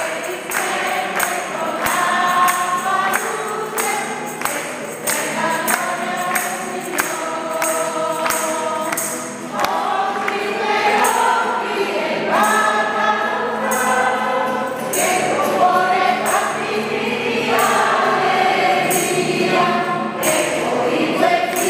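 Choir singing a hymn with instrumental accompaniment and a steady percussion beat.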